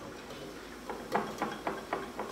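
Small wire whisk clicking against a bowl while whisking yogurt into milk. The clicks start about a second in and come at about four a second.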